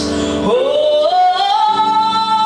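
A woman singing solo, sliding up in pitch about half a second in and rising in two steps into a long held high note.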